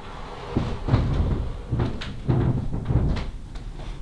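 A planchette sliding across a wooden Ouija board: an uneven scraping broken by small knocks as it shifts and stops under the fingers.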